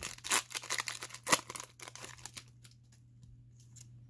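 Foil booster-pack wrapper crinkling and tearing as it is opened by hand and the cards are slid out: a dense run of crackles for the first two seconds or so, thinning to a few faint clicks.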